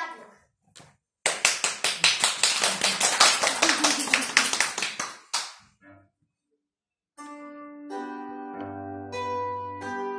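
Hands clapping in applause for about four seconds. After a short silence, a bandura starts playing about seven seconds in: plucked notes ringing on, with low bass strings joining.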